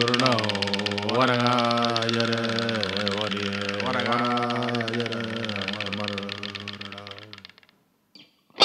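A singer's voice chanting long held notes of a Karajarri traditional song, the pitch sliding up and down a few times, over a steady low drone. It fades out near the end.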